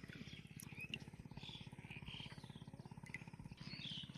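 Scattered short, high bird chirps over a faint, low, rapid and very even throbbing drone.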